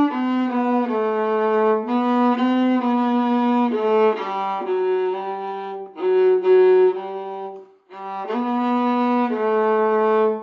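A violin-family instrument played with the bow: a slow melody of held, smoothly joined notes, with one brief break about eight seconds in.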